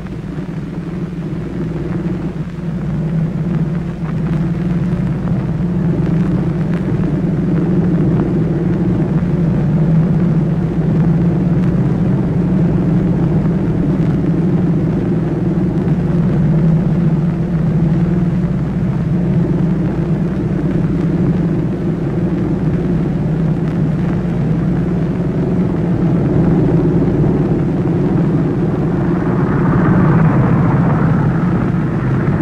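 Motorcycle and car engines running steadily as a motorcade passes, a constant low drone that rises over the first few seconds.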